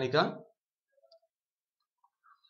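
A man's voice speaks briefly at the start. Then near silence, with a couple of faint, short clicks about a second in.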